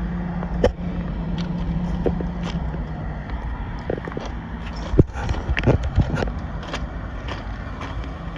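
Footsteps crunching on loose gravel track ballast, in a few uneven sharp steps, over low wind rumble on the microphone. A steady low hum runs under the first three seconds and then fades out.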